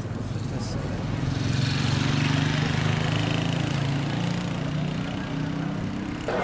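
A motorcycle engine running at a steady pitch, growing louder about a second and a half in and then holding.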